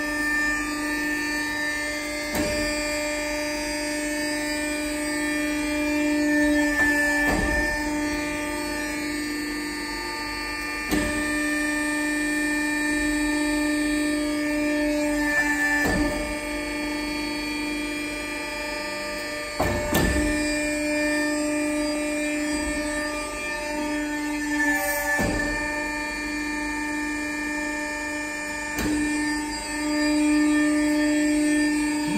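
Falach 70 hydraulic briquetting press running as it compresses wood waste into briquettes: a steady pump hum, with a sharp knock about every four to five seconds as the press cycles.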